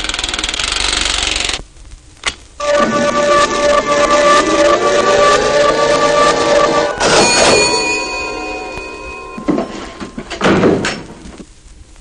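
Comic electronic sound effects of a mad scientist's molecule-mixing machine running in reverse, for a transformation. A hissing buzz first, then after a brief break steady electronic tones with a sweep gliding upward, a sudden burst about seven seconds in, new higher tones, and a few short bursts near the end as it dies away.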